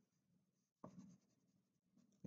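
Very faint scratching of a wax crayon shading on paper, with one slightly louder stroke just under a second in.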